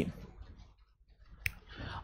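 A short pause in a man's speech, nearly quiet, broken by a single sharp click about one and a half seconds in.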